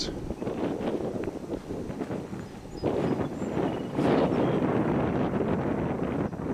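Wind blowing across the microphone: a rough, uneven rush that grows louder about three seconds in.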